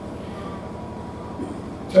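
A steady low hum fills a pause in a man's speech over a microphone, and his voice comes back in right at the end.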